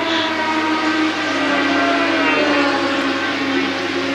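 Racing sidecar outfits' engines running on track, a steady multi-toned drone whose pitch falls a little about a second in and then holds.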